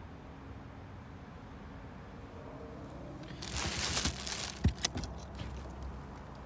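A low steady hum, then about a second of plastic wrap rustling, followed by two sharp knocks and a few lighter clicks as a car's trunk floor panel is lifted.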